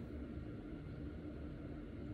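Faint steady low room noise with no distinct sound event.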